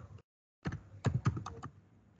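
Typing on a computer keyboard: a quick run of about eight keystrokes, starting about half a second in and lasting about a second, as a name is entered into a form field.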